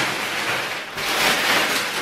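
Plastic bags rustling and crinkling as groceries are handled, with a short sharp click at the start.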